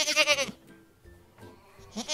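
Goat bleating: one quavering call that ends about half a second in, and a second bleat starts right at the end.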